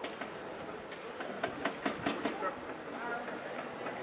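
Irregular sharp knocks and clatter as men work on a blast-damaged window frame, a quick run of about half a dozen in the middle, with faint voices.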